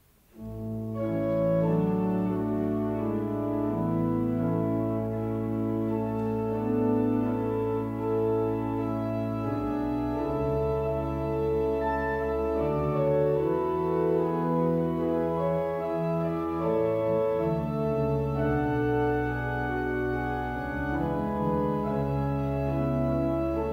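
Church organ beginning a piece about half a second in with sustained full chords over a held low pedal note. The bass changes about ten seconds in.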